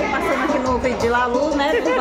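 Many people talking at once: overlapping chatter of a party crowd.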